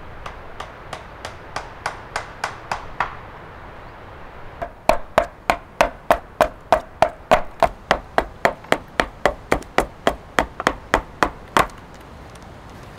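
Hatchet chopping at a small wooden block held on a bench, hewing it to shape in quick, even strokes. A run of lighter chops breaks off about three seconds in. After a short pause a longer, louder run follows at about three to four chops a second and stops just before the end.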